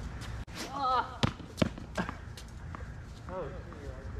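Tennis ball impacts on an outdoor hard court: two sharp hits about a second apart, followed by lighter knocks, as the served ball is struck and bounces. Short vocal exclamations come in between.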